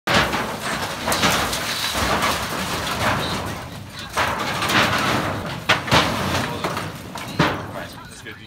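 Sheet-metal shed roof panel being lifted and tipped, its rusted steel sheeting scraping and rattling, with several sharp metallic clanks.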